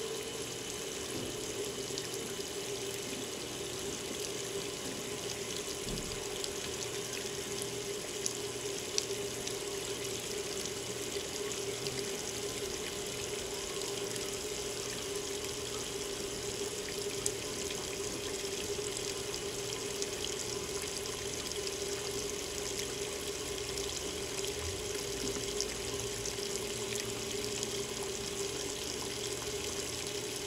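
Water pouring from the fill inlet of a Hotpoint HTW240ASKWS top-load washer into its stainless steel basket and onto the clothes, a steady splashing rush over a steady hum as the washer fills.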